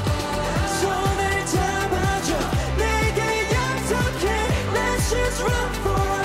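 K-pop song: a male group singing a Korean line over a steady drum beat and bass.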